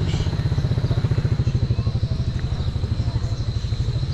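Small motorcycle engine running close by, a fast, even low putter that holds steady.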